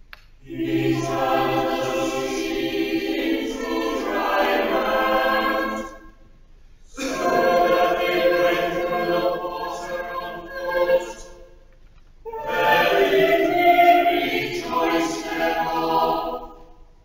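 Church choir singing in parts, in three phrases with short breaks between them, in the manner of a psalm sung to Anglican chant.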